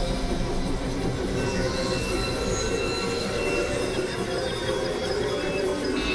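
Dense, steady noise drone from a layered experimental electronic mix: a continuous low rumble with thin, high whining tones held over it.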